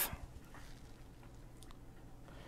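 Quiet pause: faint room hum with a couple of faint small clicks, about half a second and a second and a half in.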